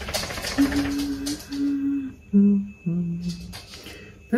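A woman humming a short tune of four held notes that step down in pitch. A rustling noise runs under the first half.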